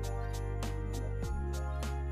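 Instrumental hip-hop background music with a steady beat of about two strokes a second over held bass notes; the bass changes note a little past halfway.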